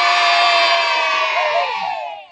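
A large crowd of schoolchildren shouting one long "yeah!" together, held steady and trailing off near the end.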